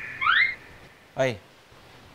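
A comic sound effect in the sitcom's soundtrack: a held whistle-like tone that slides quickly upward in the first half second. About a second later comes a short spoken 'ê!'.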